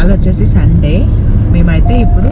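Steady low rumble of road and engine noise inside a moving car's cabin, under a woman talking.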